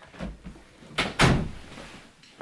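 Two sharp thuds close together about a second in, after a low rumble.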